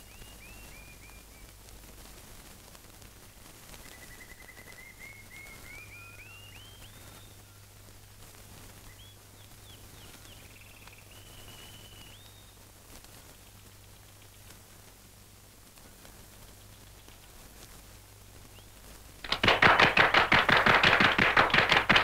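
Faint whistled notes sliding up and down over the steady low hum of an old film soundtrack. Near the end comes a sudden loud, fast drum roll that leads into the film's music.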